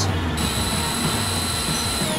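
Steady jet-like rushing noise with a thin, high whistle held at one pitch.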